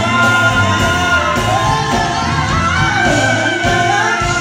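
Live soul band playing while a woman and a man sing a duet into microphones, over electric bass, drums and keyboards, heard through the venue's sound system.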